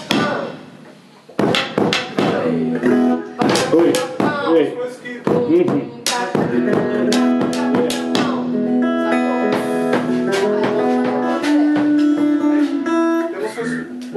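A small band playing together: drum and stick strikes, acoustic guitar and held pitched notes, with a voice among them. The playing drops off briefly just after the start, then comes back in about a second and a half in.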